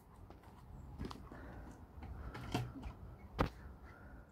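Quiet outdoor background with a few scattered light knocks and clicks, the sharpest one about three and a half seconds in.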